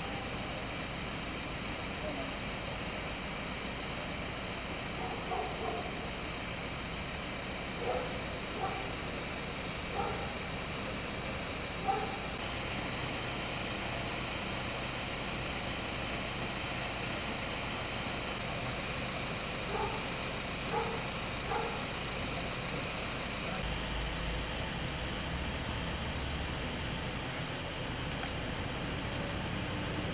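Steady outdoor background noise, with a few short, faint calls in the distance now and then.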